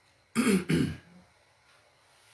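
A man clearing his throat: two short rough bursts in quick succession, about a third of a second in.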